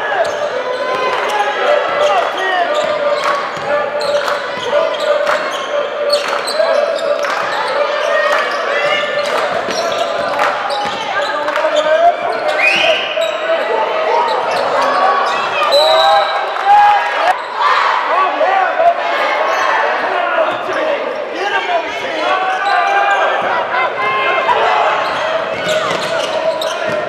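Basketball dribbling and thudding on a gym floor, with frequent short knocks of play, over a steady hubbub of many voices echoing in a large hall.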